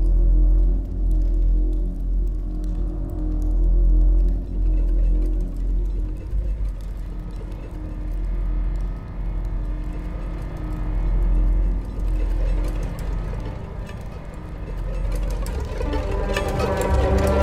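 Dark instrumental intro score: a deep sustained bass drone under held tones, swelling and ebbing in slow waves.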